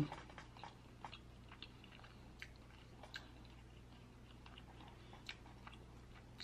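Faint chewing and wet mouth clicks of someone eating soft crab-stuffed salmon close to the microphone: a dozen or so soft, irregular clicks over a steady low hum.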